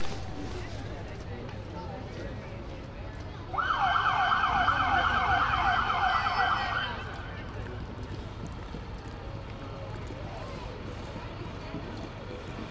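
An emergency vehicle's siren gives a short burst of fast warbling wails, starting about three and a half seconds in and cutting off after about three seconds. The rest is a low, steady street background.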